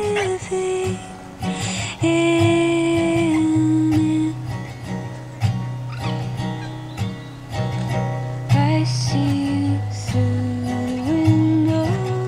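Live acoustic guitar played under a woman's singing, her voice holding long notes that step up and down between phrases.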